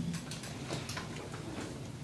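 A few faint, sharp ticks scattered over quiet room tone.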